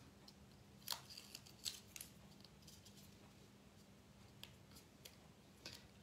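Near silence, broken by a few faint clicks and light scratches, the clearest about a second in: metal tweezers picking at and peeling the liner off strips of double-sided tape on card.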